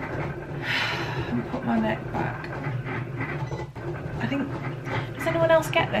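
A woman's long breathy exhale just under a second in, then low murmured voice sounds, over a steady low hum.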